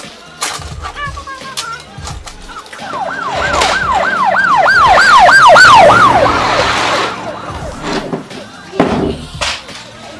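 A yelping siren, like an emergency vehicle's, wails in quick falling sweeps about three times a second. It swells in from about three seconds in, peaks, and fades out by about seven seconds. A few short knocks, like plastic toy parts handled on a table, come before and after it.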